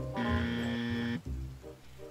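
Dark ambient background music, with a single held note sounding for about a second near the start.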